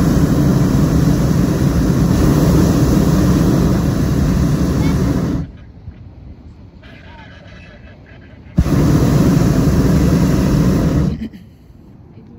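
Hot-air balloon's propane burner firing in two blasts: a long one that cuts off abruptly about five and a half seconds in, then after a pause of about three seconds a second blast of about two and a half seconds, starting and stopping just as abruptly.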